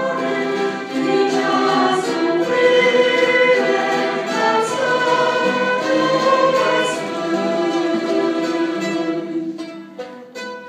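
Choir singing with a string orchestra of violins, mandolins and guitars, sustained chords and melody at full volume; the music thins and drops away near the end.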